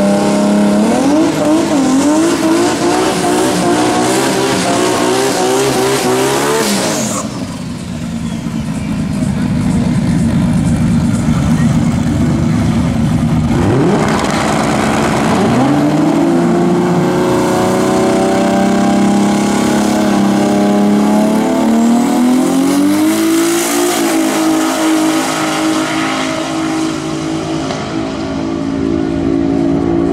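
Drag cars' engines at the start line, revving with a wavering pitch for the first several seconds, then a rushing, noisy stretch that fits tyres spinning. Past the middle the revs climb again, and about three quarters of the way through they rise and stay high as a car launches down the strip.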